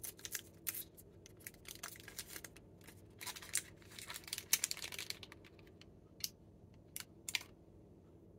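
Kit Kat Mini's metallised plastic wrapper crinkling and crackling as it is torn open and peeled off the bar, with a dense run of crinkling in the middle and a few last sharp crackles near the end.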